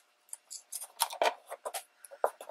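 A small strip of scrapbook paper being folded into an accordion and pinched into creases between the fingers: a run of short, crisp paper crackles and taps, busiest about a second in.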